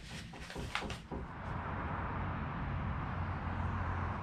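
A few soft knocks in the first second, then steady outdoor background noise with a low hum.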